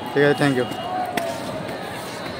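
A man's short vocal sound, not a transcribed word, over steady outdoor background noise, with a single sharp click a little after a second in.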